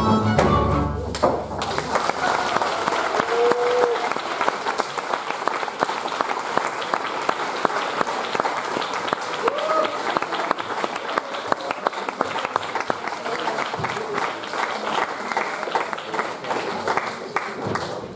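Folk dance music stops about a second in, and an audience applauds steadily after it, with a few voices calling out over the clapping.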